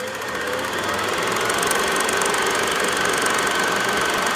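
Film projector running: a rapid, even mechanical clatter with a faint steady whine, building up over the first second.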